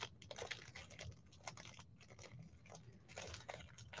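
Faint chewing of a Kinder Bueno wafer bar: a scattering of soft, small crunches.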